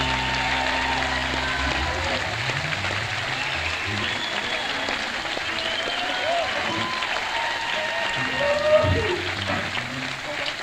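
Audience applauding and cheering as the band's last chord dies away in the first couple of seconds, with shouts from the crowd, heard on an audience cassette recording.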